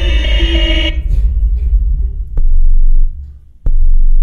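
Improvised electronic drone music. A dense, layered tone cuts off abruptly about a second in, leaving a loud deep rumble, broken by two sharp clicks and a brief dip before it swells back.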